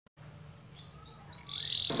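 A small bird chirping: one short high chirp about a second in, then a long, steady high note from about one and a half seconds.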